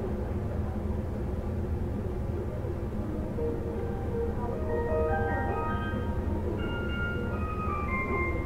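The steady low rumble inside a JR 313 series electric train car, with a short chime melody of bell-like notes starting about three and a half seconds in.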